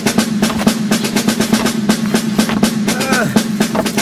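Cartoon underscore music: a rapid snare drum roll over a steady held low note, building suspense. Short effortful grunts come in about three seconds in.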